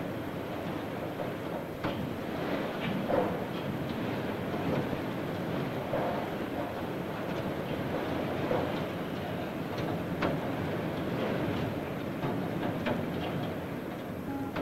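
Steady mechanical rumble and clatter of industrial machinery, with a few scattered sharp knocks.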